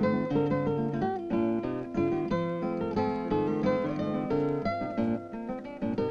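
Acoustic guitar music: plucked and strummed notes in quick succession, several at once.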